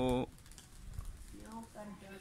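A man's brief "oh" exclamation, then a quiet outdoor background with faint voices.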